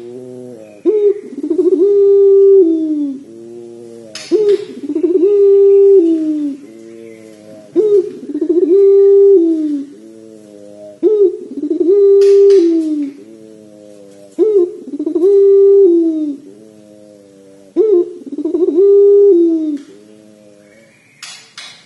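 Puter pelung (domestic Barbary dove bred for its long coo) cooing repeatedly: about every three and a half seconds a short lead-in note, then a long drawn-out coo held steady and falling at its end. It coos six times.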